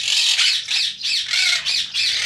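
A flock of pet parakeets (monk/quaker and ring-necked parakeets) calling, with many short, high, repeated calls overlapping without a break.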